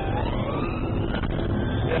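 Police car siren wailing, its pitch rising slowly through the first second and a half, over the pursuing car's engine and road noise.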